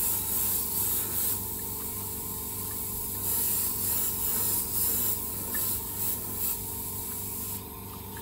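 Airbrush spraying a coat of black paint: a steady high air hiss that swells and dips between strokes, over a steady low hum. The spraying stops near the end.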